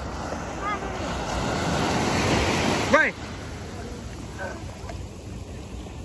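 Small sea waves breaking and washing up the sand, the surf swelling over the first three seconds and then dropping off suddenly. A short voice cry cuts in at about three seconds.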